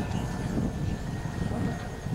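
A model jet's turbine engine runs on the far runway: a faint steady whine over an uneven low rumble.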